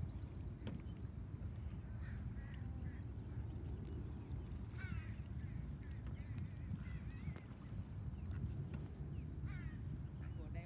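Canada geese giving a few short, scattered calls over a steady low background rumble.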